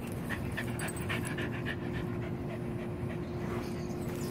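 Corgi panting after running, quick short breaths about four a second, strongest in the first couple of seconds. A steady low hum runs underneath.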